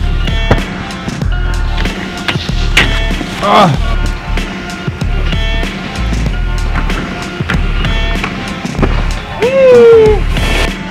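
Music soundtrack with a heavy bass and a steady beat, with sliding pitch sweeps about a third of the way in and again near the end.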